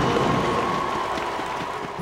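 Stadium crowd noise and applause fading out as the marching band's last held brass note dies away.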